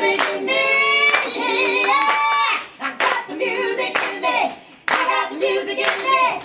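A woman singing live, with hand claps keeping the beat about once a second.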